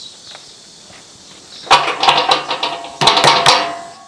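A metal-framed gate with wooden slats rattled hard by hand, in two loud bursts of clattering with a metallic ring, the second fading out just before the end.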